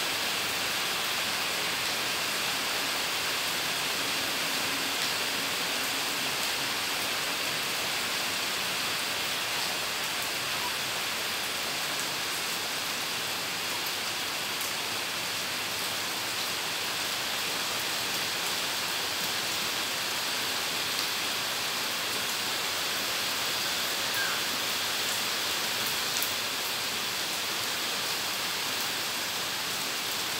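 Steady rain falling on a wet tiled courtyard and potted plants, an even, unbroken hiss.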